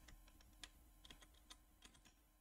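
Near silence with faint, irregular clicking from computer keys or a mouse at a desk, about eight light clicks over two seconds.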